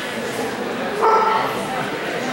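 A dog gives one short, high-pitched yelp about a second in, over a background of crowd chatter.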